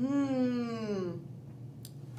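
A woman's sung "meow", imitating a cat, falling in pitch and lasting about a second, with a small click near the end.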